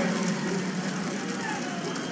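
Arena crowd noise: a steady din of many voices, with scattered faint calls.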